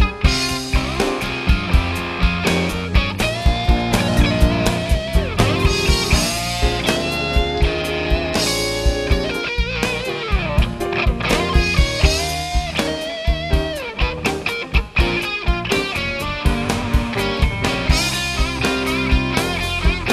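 A small band playing an instrumental break with no vocals: electric guitar to the fore over a steady drum kit beat, with bass and other instruments filling in.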